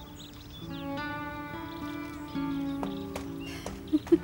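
Background score music of sustained held notes that change every second or so, with a few short clicks near the end.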